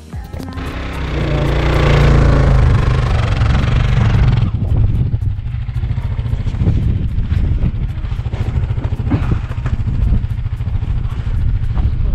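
Kawasaki KLR650's single-cylinder engine running, with a loud rushing noise over it for the first four seconds or so.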